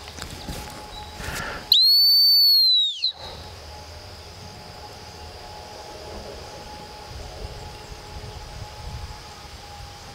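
One long, high blast on a dog-training whistle about two seconds in, a steady tone that dips slightly as it ends. It is the retriever handler's single-blast stop-and-sit signal, calling the dog's attention before a hand cast.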